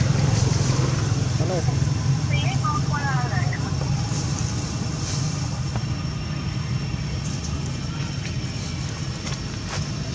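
A steady low engine-like rumble runs throughout, with a faint high steady whine above it. About two and three seconds in come a few short pitched calls or voice sounds.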